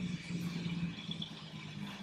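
Outdoor background: a steady low hum with a faint haze of noise, the kind left by distant traffic or a building's machinery.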